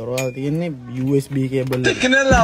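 A voice singing or humming held notes that slide up and down, with a few light clinks over it.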